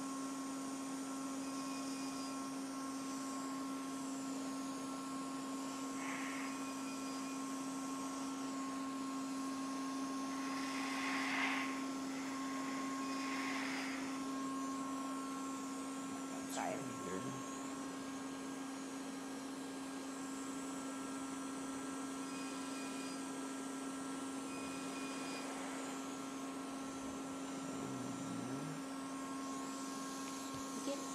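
Edge 1 CO2 laser system running with a steady electrical hum, a few short high beeps now and then, and two brief rushing noises around the middle.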